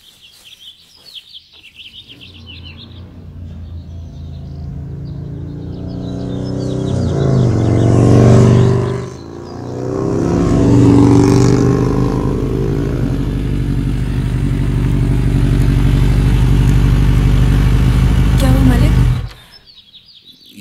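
Motorcycle engine coming closer and growing louder over several seconds. It dips briefly, then runs steadily and cuts off abruptly about a second before the end. Birds chirp at the start.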